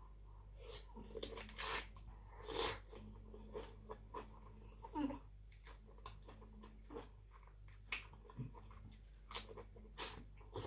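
Close-up eating sounds of a person chewing, biting and slurping spicy papaya salad with khanom jeen rice noodles, in irregular crunches and smacks.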